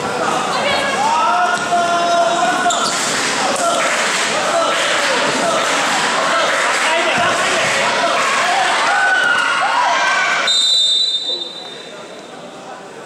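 A basketball bouncing on a gym court under loud, overlapping shouts and cheers from players and spectators, echoing in the hall. The noise drops away sharply about ten and a half seconds in.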